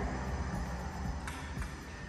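Soft background music over a steady low rumble of outside noise coming in through open terrace doors.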